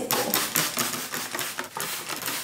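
Plastic trigger spray bottle spritzing water onto hair in a quick run of squeezes, each a short hiss, to dampen hair that has dried.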